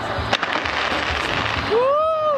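Fireworks bursting and crackling in a dense, continuous barrage, with a sharp bang about a third of a second in. Near the end a voice calls out in a long rising-and-falling tone.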